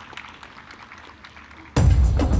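A crowd applauding at a low level, then loud music with a heavy drum beat cuts in suddenly near the end.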